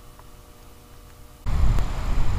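Quiet room tone with a faint steady hum, then, about a second and a half in, wind buffeting the microphone cuts in as a loud, rough low rumble.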